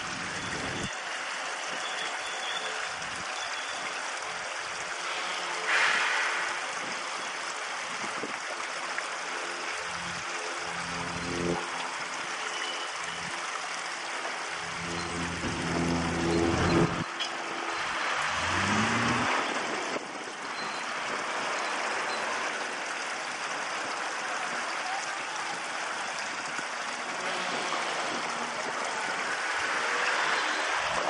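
Two-axle diesel shunting locomotive running slowly while hauling covered freight wagons, its engine note louder in the middle and rising in pitch about eighteen seconds in, over a steady hiss.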